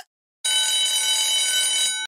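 Quiz countdown timer sound effect: a last tick, then about half a second later a steady ringing alarm tone held for about a second and a half, signalling that time is up.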